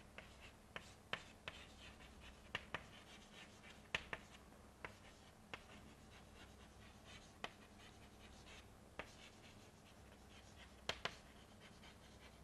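Chalk writing on a chalkboard: irregular sharp taps with faint scratching between them as letters are written, and a pair of taps near the end.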